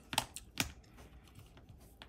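Two sharp taps about half a second apart, then faint small clicks and rustling: hands handling and setting down pieces of clay on a hard work table.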